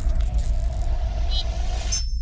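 Cinematic logo-intro sound design: a deep steady rumble under a faint held tone, with a brief high glint about a second and a half in. Near the end the upper sounds cut off, leaving only the rumble.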